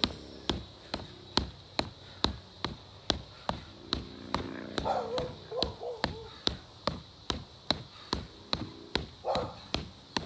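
Fists punching a free-standing punching bag in a steady rhythm: sharp thuds about two to three times a second.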